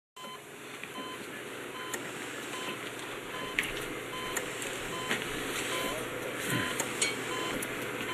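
Hospital patient heart monitor beeping steadily, about one short beep every three quarters of a second, marking the patient's heartbeat, over a low background hiss.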